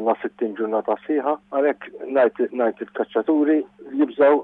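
A man speaking over a telephone line, the voice thin and cut off in the treble, with a steady low hum under it.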